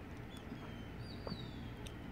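Faint background noise with a few thin, high chirps that fall in pitch, like small birds calling in the distance.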